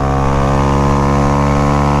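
Honda Grom's 125 cc single-cylinder four-stroke engine running steadily at high revs, pegged out through a bend, with wind rushing over the microphone.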